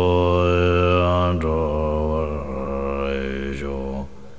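Tibetan Buddhist prayer to Guru Rinpoche chanted in a slow, melodic voice, each syllable long-held with slow glides in pitch.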